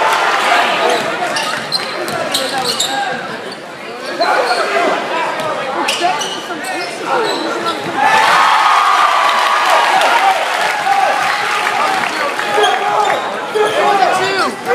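Basketball being dribbled on a hardwood gym floor during live play, echoing in the hall, with players and spectators calling out.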